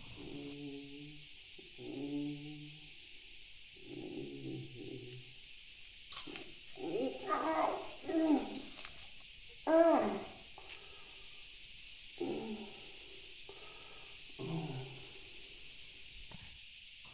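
A woman sobbing in uneven bursts, with wavering, breaking cries; the loudest come about halfway through.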